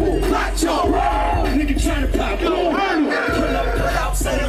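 A crowd of many voices shouting at once over loud hip hop music with a steady deep bass.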